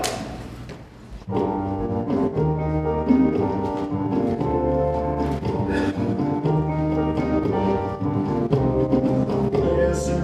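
A band starts the instrumental introduction to a musical-theatre song about a second in, with a prominent bass line under chords.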